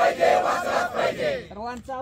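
A crowd shouting a slogan together in unison, answering a single leader's call. The shout fades about a second and a half in, and one voice then starts the next call.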